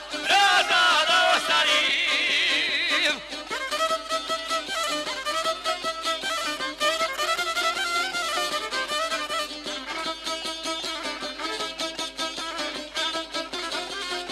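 Bosnian izvorna folk music. A man's sung line with strong vibrato ends about three seconds in, then an instrumental break follows: a rapidly strummed šargija (long-necked lute) with a fiddle carrying the melody.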